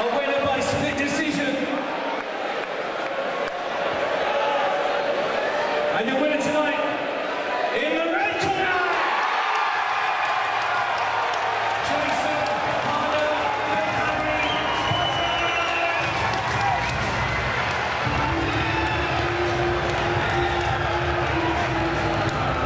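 Crowd noise and a voice echoing in a large hall, then music with a steady thumping beat coming in about halfway through.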